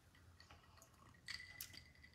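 Near silence, with a few faint clinks of ice in a glass about a second and a half in as a cocktail is sipped.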